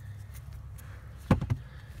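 Two quick knocks a fraction of a second apart, about a second and a half in, from parts being handled at the steering shaft joint under the dashboard, over a low steady hum.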